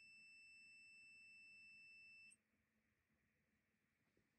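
Faint steady high-pitched electronic alarm tone from a ghost-hunting proximity-alert light, cutting off suddenly about two seconds in. The device has stopped alarming, which the investigator takes as a spirit's response.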